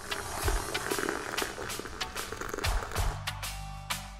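Background music with deep bass hits, over hot water pouring from a thermos into a mate gourd, a gurgling rush that stops about three seconds in.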